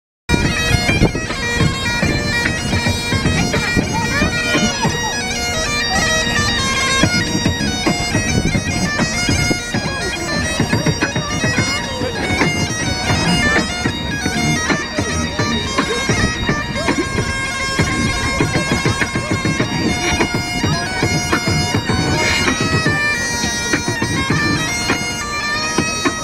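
Bagpipes played loud and continuous: a steady drone under a chanter melody, with a dense rhythmic low knocking from mechanical stomping rigs with metal feet strapped to the piper's legs.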